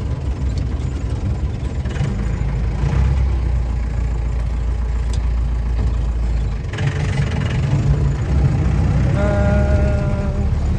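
Modified 1994 Mahindra jeep driving slowly on a gravel track, its engine running with a heavy low rumble heard from inside the cabin. Near the end a short, steady pitched tone sounds.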